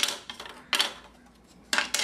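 Thin plastic battery cover of a Samsung Galaxy S smartphone clacking as it is handled and laid on a wooden table: two short, sharp plastic clatters about a second apart.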